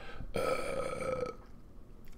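A man's drawn-out hesitation sound, 'euh', held on one steady pitch for about a second, then breaking off into a pause.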